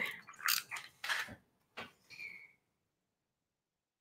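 A handful of short, light clicks and brief rustles spread over the first two and a half seconds, then near silence.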